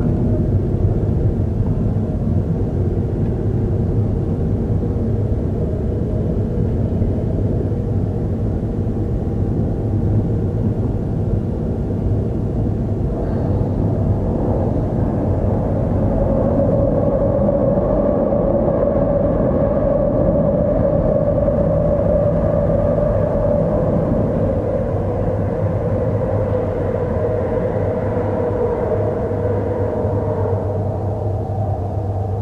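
A car driving, heard from inside the cabin: steady low road and engine noise. About halfway through, a steady higher hum comes in and grows louder.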